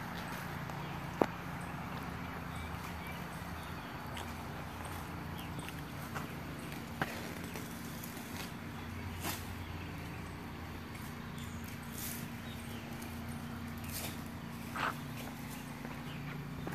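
Footsteps walking on a hard outdoor path, with a few sharp clicks (the loudest about a second in), over a steady low hum.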